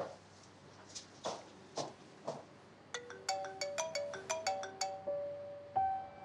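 Mobile phone ringtone: a quick tune of short, sharply struck notes that starts about halfway in and keeps ringing. Before it come a few faint soft sounds.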